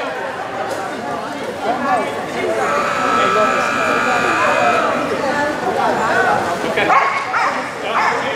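A dog barking over voices in a large, echoing hall.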